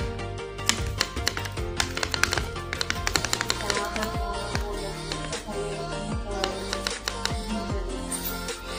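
Background music with a steady bass line, overlaid by rapid, irregular clicks and pops from slime-type play dough being squeezed and pressed between the fingers. The clicks are densest in the first half.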